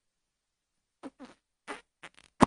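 About a second of near silence, then three short mouth sounds into a microphone, each bending in pitch: the start of a beatbox pattern.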